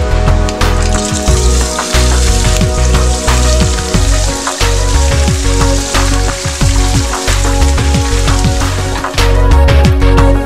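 Food sizzling as it fries in a pan on a cooktop, over background music with a strong, steady bass beat.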